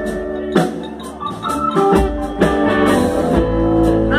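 Live soul band playing through a PA: electric guitars, bass, drum kit and keyboard, with held chords and sharp drum hits marking the beat.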